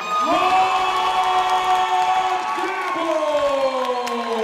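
Ring announcer's voice over the arena PA, stretching the winner's announcement into long drawn-out held syllables that slide down in pitch near the end, over a cheering crowd.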